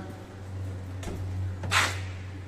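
Ram 1500 pickup's driver door being unlatched and swung open: a soft thump about a second in, then a short sharp latch noise near the end, over a steady low hum.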